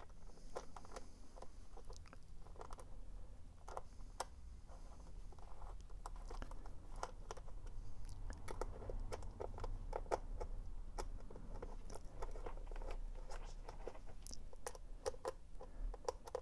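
Faint, irregular ticks and scrapes of a hand screwdriver turning the bolts of a three-bolt road cleat into the sole of a cycling shoe, with gloved-hand handling noise.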